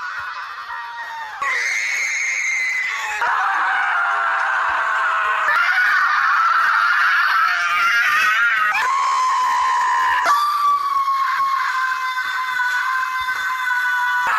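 Several long, high-pitched human screams edited back to back, each held for two to three seconds before cutting abruptly to the next.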